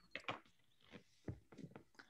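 A few faint, separate clicks and knocks, as from a mouse or desk, with quiet gaps between them.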